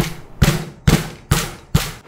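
Five hard blows about half a second apart, a hand-held tool hammering down on a small plastic dispenser housing to break it open.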